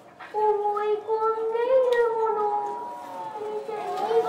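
A child kabuki actor's high voice declaiming in long, drawn-out, half-sung vowels. It starts about a third of a second in, with a brief break near one second.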